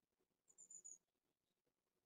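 Near silence on a voice call, with one faint, brief high-pitched chirp about half a second in.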